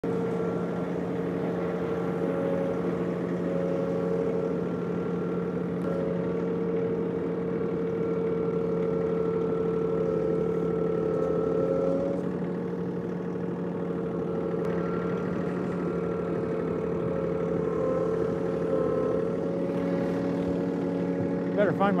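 John Deere 3046R compact tractor's three-cylinder diesel engine running steadily under load while its loader bucket pushes snow.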